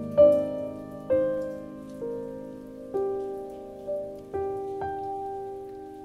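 Slow, gentle piano background music: single notes and soft chords struck about once a second and left to ring and fade.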